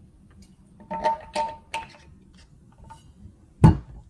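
Hard objects being handled: three quick clinks with a short ringing tone about a second in, a fainter clink later, then one heavy thump near the end.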